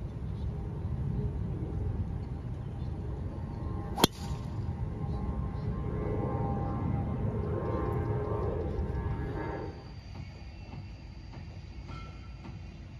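Golf driver striking a ball off the tee: one sharp crack about four seconds in, over a steady low rumble.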